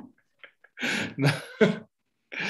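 A man's voice making three short, breathy non-word sounds in quick succession, a little over a second in all.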